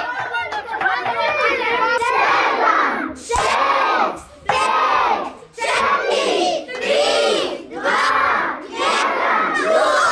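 A group of children chanting together in rhythm, about one shout a second.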